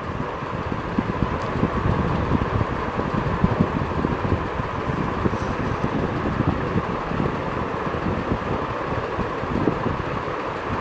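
Steady rushing air noise with a faint steady hum, unbroken throughout.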